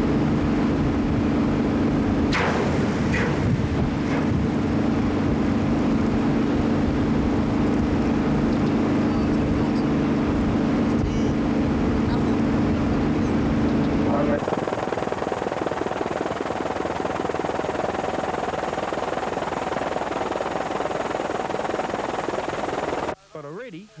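Steady machinery hum with wind noise as an underwater charge is detonated beside a naval minehunter, with a brief crackling rush about two and a half seconds in. At about fourteen seconds the hum gives way to a broad hissing noise with a thin high whine, which stops shortly before the end.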